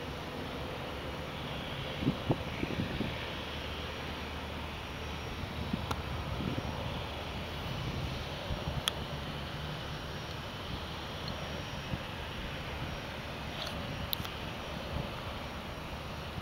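Cessna 152's four-cylinder Lycoming engine and propeller droning steadily, heard from the ground as the trainer climbs away after takeoff. A few thumps on the microphone about two seconds in.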